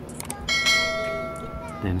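A bell-like notification ding sound effect. It is struck once about half a second in and rings out for over a second with a clear tone and several higher overtones, after a couple of light clicks.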